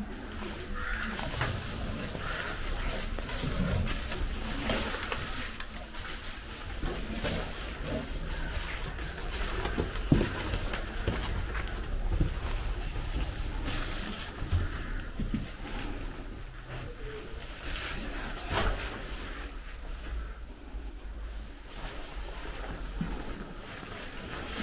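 Footsteps scuffing and crunching over rubble and dry leaves, with clothing rustle and scattered small knocks, and one sharper knock about ten seconds in.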